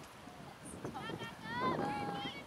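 High-pitched voices shouting and calling out across the field, starting about a second in, with rising and falling pitch and no clear words.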